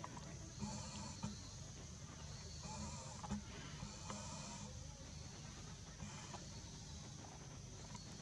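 Monkeys calling: a few short, faint pitched cries, spaced a second or two apart.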